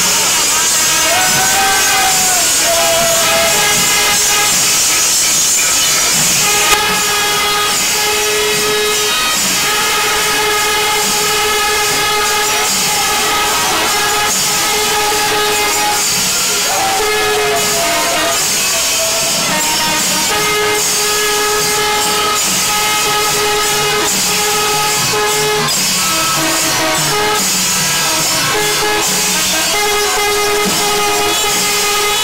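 Kerala temple wind ensemble: kuzhal double-reed pipes playing long held notes that break and resume every few seconds, with kombu brass horns sounding rise-and-fall calls about a second in and again about halfway through.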